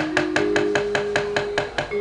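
Rapid, even knocking of the dalang's wooden mallet (cempala) on the wayang puppet chest, about eight knocks a second, under a few held instrument notes that step upward in pitch, leading into the sung mood-song.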